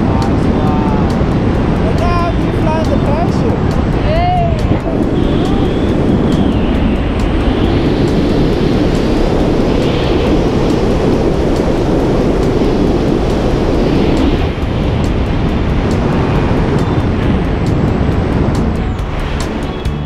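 Loud, steady rush of air over the camera microphone during a tandem skydive. A voice calls out a few times within the first five seconds.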